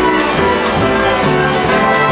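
Jazz big band playing a full ensemble passage: saxophones, trumpets and trombones holding chords over a walking bass line, with light drum strokes.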